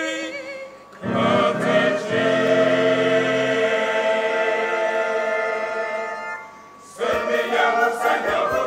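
Church choir of men's and women's voices singing. A single voice's held note with vibrato trails off at the start, then the full choir comes in about a second in on a long sustained chord that fades near six and a half seconds, and a new phrase begins about a second later.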